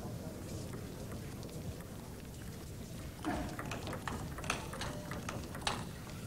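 Table tennis ball being struck back and forth in a rally, sharp ticks of ball on bat and table coming about every half second in the second half.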